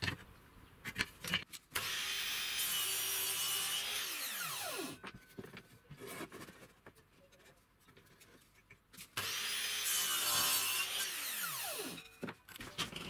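Metabo mitre saw making two cuts through a wooden strip: each time the motor runs for about three seconds and then a falling whine as the blade spins down. Clicks and knocks from handling and clamping the wood come between the cuts.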